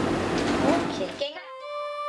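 Noisy classroom room tone with a faint voice, cut off abruptly just over a second in; soft held music notes follow.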